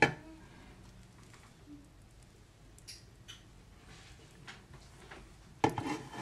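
One sharp knock right at the start, then quiet room tone with a low steady hum and a few faint clicks about halfway through.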